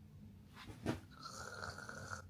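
A faint mock snore: a short snort about a second in, then a thin whistling exhale.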